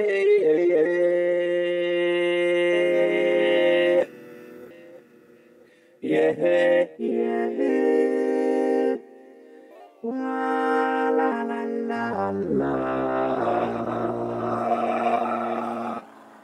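Vocoder synth from the Vio app on an iPad, voicing sung notes as held chords. It plays three held phrases with short breaks between them, then a falling run of notes into a lower, buzzier sustained chord near the end.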